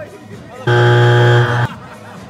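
A loud, steady buzzer-like tone, held for about a second and starting and stopping abruptly.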